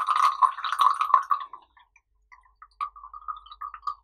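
Green tea poured in a thin stream from a glass pitcher into a tall glass, splashing and trickling into the liquid already there. The stream dies away about a second and a half in, then comes back as a broken trickle.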